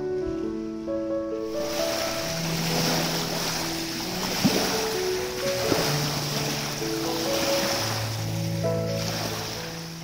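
Background music with slow held notes, joined about a second and a half in by small waves washing on a sandy shore, with wind on the microphone.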